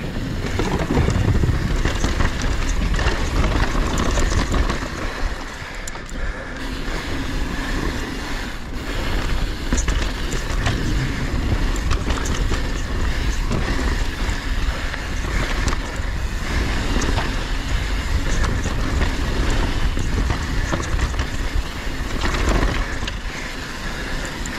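Mountain bike descending a dirt trail: steady rush of tyres on dirt and wind, with frequent knocks and rattles from the bike over bumps.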